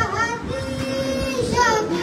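A noha, an Urdu mourning lament, chanted unaccompanied by a male voice through a microphone, with a long held note in the middle.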